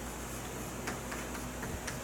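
Chalk on a blackboard: a few faint, irregular taps as characters are written, over a steady low room hum.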